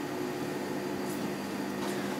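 A steady low hum runs throughout, with faint light rustles about a second in and again near the end, typical of fabric being handled.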